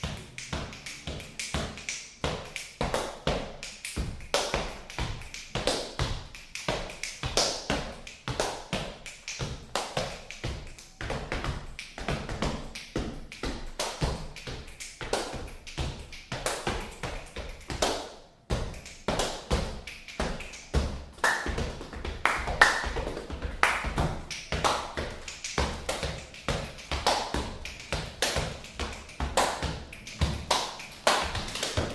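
Body percussion: sneakers stomping and stepping on bare wooden floorboards, mixed with hand slaps and claps on the body, in a fast, dense rhythm of sharp taps over low thumps. There is a brief break about eighteen seconds in.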